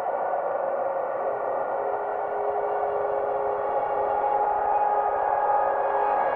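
Slow ambient music on synthesizer: long held tones with no beat, a lower note joining about two seconds in and a higher one a couple of seconds later.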